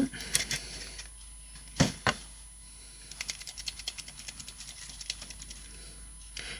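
Nuvo glitter marker being primed for first use: a run of rapid small clicks in the second half, after two sharp knocks about two seconds in.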